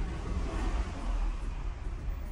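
Car cabin noise: a steady low rumble with an even hiss, no distinct clicks or tones.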